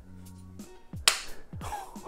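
A single sharp click about a second in as the plastic camera body snaps onto its strong magnetic mount, over soft background music.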